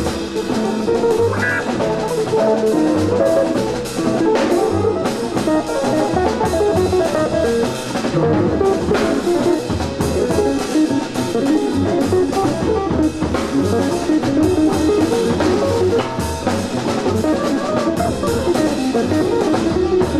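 Live jazz from a quartet of drum kit, double bass, piano and a lead saxophone or electric violin, played back from a vinyl LP, with the drums prominent.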